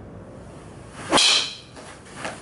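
Ping G LS Tec driver swung at full speed and striking a golf ball about a second in: a quick swish, then a loud, high-pitched crack from the titanium clubhead that rings off briefly.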